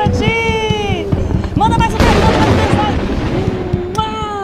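Studio sound effects for the 'heart explodes' gag: sliding cartoon-like tones, then an explosion-like burst of noise about halfway through that dies away over a second or so, with music underneath.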